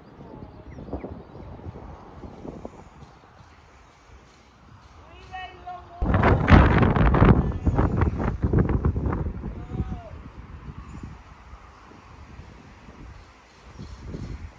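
A person's voice calling faintly at a distance. From about six seconds in, wind buffets the microphone loudly for several seconds and then dies away.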